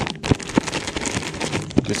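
A plastic zip-top bag holding fish fillets and breading mix being shaken to coat the fillets: fast, irregular crinkling and rustling with a few soft knocks as the fillets hit the bag.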